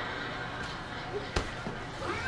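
A single sharp knock on a folding tabletop about one and a half seconds in, amid quiet handling of a shirt being smoothed and folded flat on the table.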